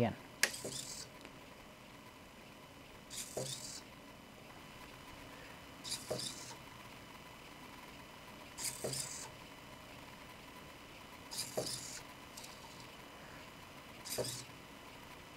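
Hobby servo motors in a 3D-printed robot leg buzzing in short bursts, about every three seconds, five or six times, as a program sweeps the leg back and forth between 90 and 120 degrees.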